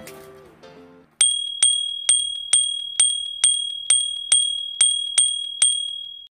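Music fading out, then a notification-bell sound effect ringing over and over, about two strikes a second, each a single high, clear bell tone that sustains to the next strike.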